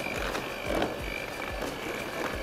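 Electric hand mixer running steadily with a high whine, its beaters churning through a thick creamed mixture of ghee, sugar and eggs.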